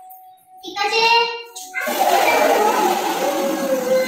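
A young child's high-pitched cry, then water poured over him splashing steadily for the last two seconds, with a held wailing note over the splashing.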